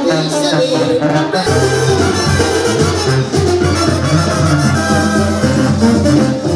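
Loud, upbeat Latin band music with a bass line that steps from note to note under the melody.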